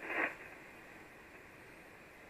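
Hiss of 75-metre band noise from an Icom IC-706MKIIG transceiver's speaker in the gap between single-sideband transmissions, after a voice cuts off in the first quarter second. The steady hiss is cut off above the receiver's narrow voice passband.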